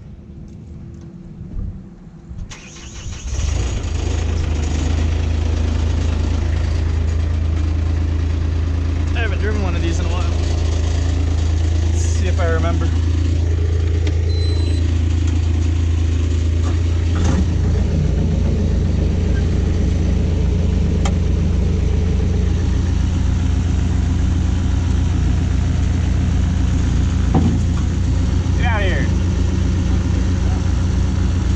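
A heavy-equipment diesel engine starts about three seconds in and then runs steadily at idle, loud and close. Near the middle its low note turns more pulsing and throbbing.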